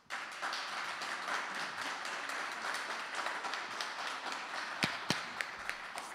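Applause from a small audience, breaking out at once as the ensemble's vocal piece ends and holding steady, with a few separate louder claps standing out near the end.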